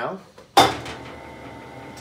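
A sharp metallic clank about half a second in, then the electric drive and gearbox of an ICARO combined rebar cutter-bender running with a steady hum as its bending table rotates. With the stop pin removed, the table keeps turning instead of stopping at the limit switch.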